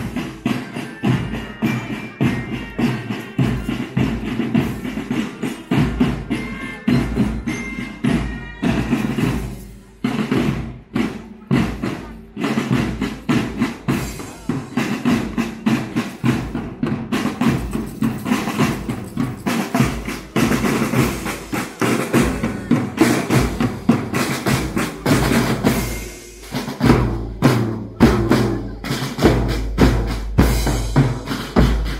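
Marching drum band playing snare and bass drums in a steady, driving march rhythm, with the bass drum heavier over the last few seconds.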